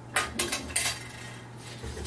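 Hard metal objects clinking and clattering as they are picked up and handled, three or four quick clatters in the first second.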